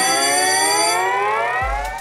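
Programme title-card sound effect: an electronic sweep of several tones climbing slowly together, fading toward the end. A thin high ringing tone sounds with it and stops about a second in.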